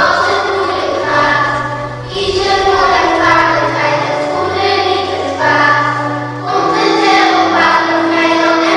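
Music of a choir singing, with held bass notes under the voices and chords changing about every second or two.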